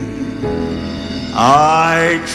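Gospel quartet music with piano accompaniment: held chords for the first second and a half, then a male voice slides up loudly into a high sung note.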